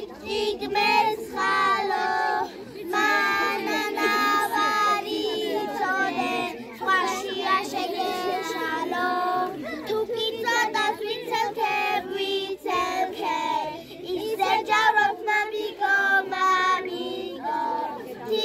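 Young girls singing a song, their high voices holding and bending notes with short breaks between phrases.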